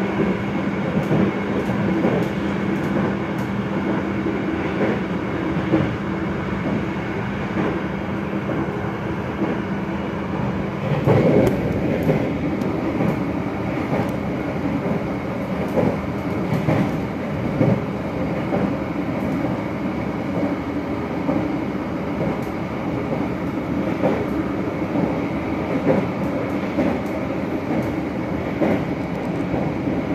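Argo Parahyangan passenger train running at speed, heard from inside the coach: a steady rumble of wheels on rails with occasional clicks. A steady low hum under it stops about eleven seconds in, where there is a brief louder rush.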